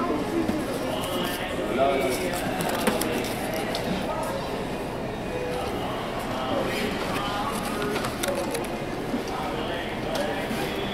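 Indistinct voices of people talking in a shop, with light clicks and rustles as clothes on hangers and their price tags are handled.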